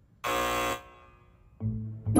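A short, steady electronic buzzer tone, about half a second long, just after the start. Near the end, music with a heavy bass beat starts up.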